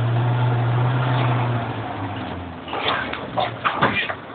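Land Rover engine heard from inside the cabin, a steady low drone that eases off about a second and a half in, over the rumble of the vehicle on the track. A few short sharp sounds come near the end.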